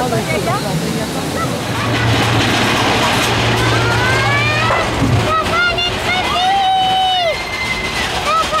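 Riders on a mine-train roller coaster shouting and whooping, with rising and long held cries, over the rumble of the ride.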